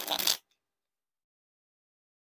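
A deck of Theory11 Red Monarchs playing cards being riffle-shuffled: a quick riffle of card corners flicking off the thumbs and interleaving, lasting about half a second at the very start.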